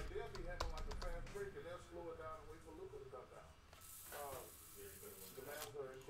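Quiet, indistinct speech with a quick run of computer-keyboard clicks in the first second, then a hiss lasting about two seconds in the second half.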